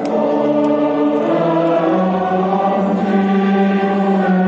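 Choral music sung in long held notes, the chord moving to new pitches a couple of times.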